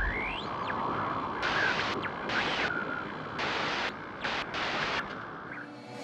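Static-like hiss from a logo intro sound effect. A rising whoosh sweeps up in the first second, then the hiss stutters, cutting in and out until near the end.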